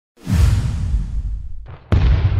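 Logo-intro sound effect: a sudden deep whooshing impact with rumble that fades over about a second and a half, then a second sharp hit of the same kind near the end.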